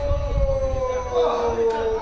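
A football commentator's long drawn-out goal cry, "gooool", held as one shouted vowel that slides slowly down in pitch.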